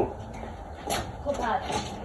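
A small child's voice, brief and faint, about a second in, with a light tap just before it.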